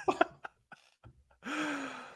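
A man's breathy gasps and stifled laughter at the start, then a short held voiced groan near the end, in dismay at a wrong answer.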